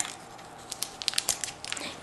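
Scissors cutting through white fur: a quick, irregular run of small snips and rustles that starts a little under a second in.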